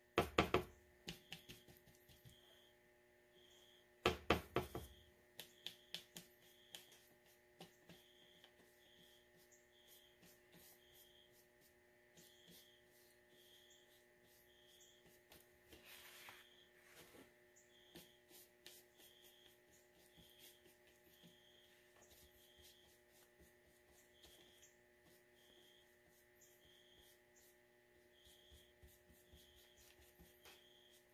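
Brush working watercolour in a plastic pan palette: two short bursts of rapid clicks and taps, about four seconds apart, then faint scattered ticks from the brush over a low steady hum.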